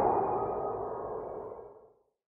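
The ringing tail of an intro logo sound effect, dying away steadily and fading out just before the end.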